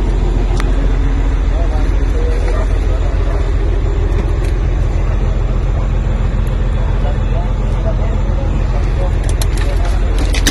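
Loud, steady low rumble from amateur phone footage, with faint voices underneath.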